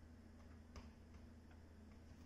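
Near silence: quiet room tone with a low hum and a few faint ticks, about three a second, one a little louder just under a second in.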